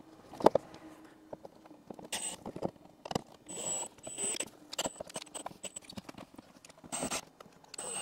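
Cordless drill-driver run in several short bursts with a high whine, driving the screws that mount a headlight and set its beam angle. Sharp clicks and knocks of the parts being handled sound between the bursts.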